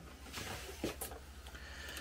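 Soft rustling and handling noise as a MIDI keyboard is lifted onto a lap, with two light knocks about a second in, over a steady low hum.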